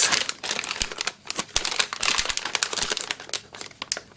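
Anti-static plastic bags holding circuit boards crinkling as they are handled and turned over: a quick, irregular run of small crackles.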